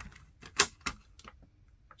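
A handful of sharp plastic clicks and taps from HeroClix miniatures and their clear plastic container being handled, the loudest a little over half a second in.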